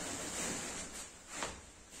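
Soft rustling and shuffling of bean bag chairs as two children get up from them, with a small swell about a second and a half in.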